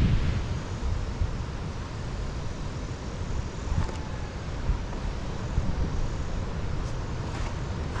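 Wind buffeting an action camera's microphone: an uneven low rumble with a few faint ticks.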